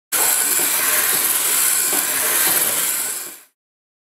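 A loud, steady hiss, strongest in the treble, that fades out about three and a half seconds in.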